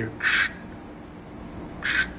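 A man imitating the squelch burst of a keyed backpack radio with his mouth: a short hiss about a quarter second in, and another near the end. This is the signal a listening tank sent by keying the radio, to be keyed back in answer.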